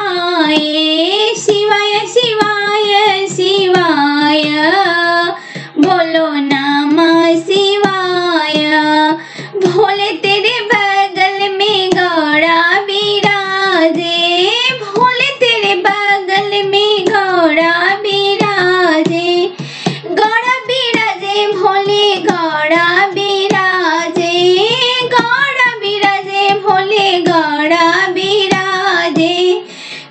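A high solo voice singing a Bhojpuri devotional folk song to Shiva in long melodic phrases with short breaks, over a steady low drone.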